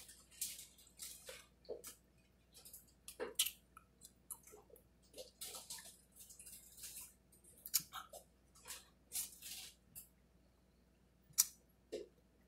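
Close-up mouth sounds of eating a chocolate-coated soft-serve ice cream bar: biting and chewing with wet smacks and small clicks in short, irregular bursts, one sharper click near the end.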